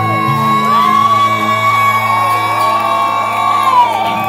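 Live rock band playing, a long high note held over steady bass notes, with audience members whooping and cheering over the music.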